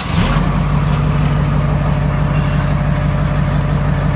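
Detroit diesel engine of a 1989 GM truck starting, catching in the first fraction of a second and then idling steadily.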